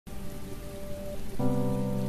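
Steady rain with soft background music; a fuller held chord comes in about one and a half seconds in.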